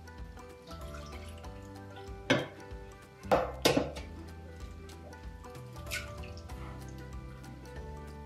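Background music, over which eggs are cracked against a plastic mixing bowl and drop in, making a few short sharp cracks and wet plops a little over two seconds in and twice more around three and a half seconds in.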